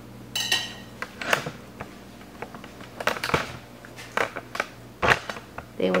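A knife and vegetable pieces knocking and clinking against a stainless steel mixing bowl, a scattered handful of taps over several seconds. The first knock leaves the bowl ringing briefly.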